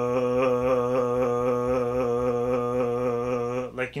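A man holding one low, steady vocal tone as a warm-up exercise while bouncing up and down on his tiptoes with his belly full of air, the tone wobbling slightly and evenly. The tone stops just before the end.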